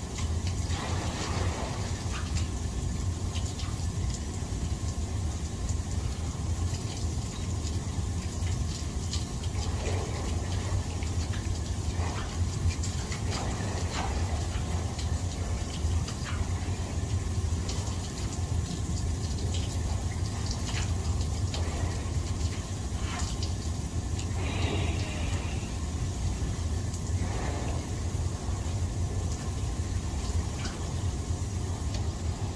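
Jacuzzi jets churning the water: a steady bubbling rush over a low, even hum, with occasional small splashes.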